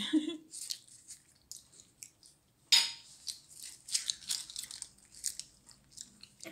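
Crinkly crackling of a foil muffin case being peeled off a muffin by hand: a run of small crackles, with one sharper, louder crackle a little before the middle.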